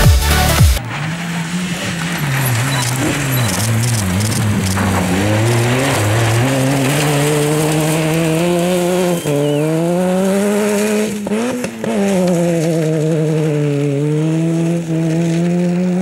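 Electronic dance music cuts off in the first second. After that, a Peugeot 106 Rally's engine is driven hard on a gravel hillclimb stage, its pitch climbing and falling as it revs, with brief dips about nine seconds in and again near twelve.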